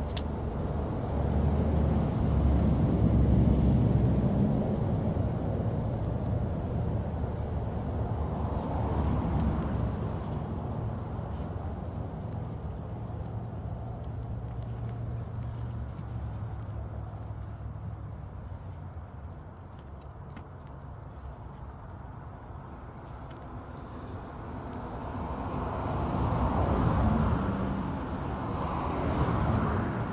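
Road traffic heard at a distance: a low, steady noise that swells and fades as vehicles pass, loudest near the start and again near the end.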